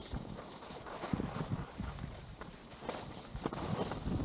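Skis sliding and scraping over groomed snow, with irregular short knocks and clatter, and wind rumbling on the microphone.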